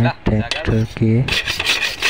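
A hacksaw cutting through a bolt on a tractor disc plough: repeated back-and-forth strokes of metal rasping on metal.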